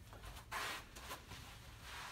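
Faint rustling of clothing and body movement as a person gets down onto artificial turf, with one brief rustle about half a second in and a few soft clicks.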